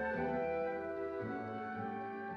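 Orchestra playing slow classical music: sustained chords that change every second or so over a shifting bass line.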